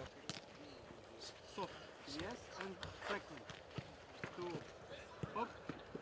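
Faint, distant voices of footballers calling out across a training pitch, with scattered short, sharp knocks and taps.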